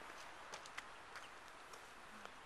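Quiet outdoor background hiss with a few faint, short clicks spaced about half a second apart.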